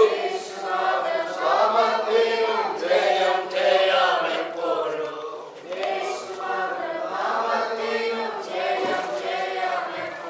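Congregation singing a worship song together, many voices at once.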